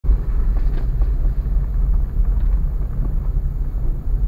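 Car cabin noise while driving over a rough, cracked concrete lane: a steady low rumble from the road and engine, with a few faint knocks and rattles.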